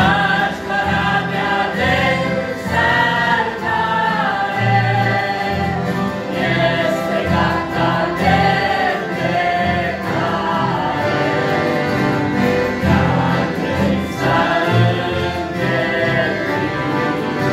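Mixed family choir of men, women and children singing a Christian song, accompanied by two piano accordions and an acoustic guitar.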